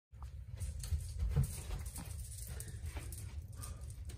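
Soft footsteps on a carpeted floor, a few dull thuds, over a steady low rumble.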